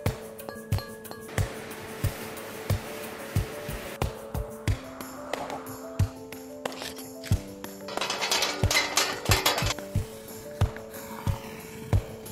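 Music track with a steady beat, about three thumps every two seconds, under long held notes. About two-thirds of the way through comes a brief bright, rattling, clinking passage.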